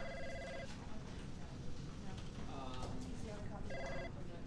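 Electronic office telephone ringing with a trilling two-tone ring, once at the start and again about four seconds later, over faint background office chatter.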